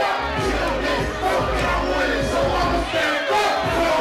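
Live hip-hop show: a crowd shouting along with a rapper on the microphone over a bass-heavy beat through the PA.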